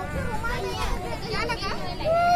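Children's voices calling and chattering as they play, several overlapping in short high bursts, over a low rumble.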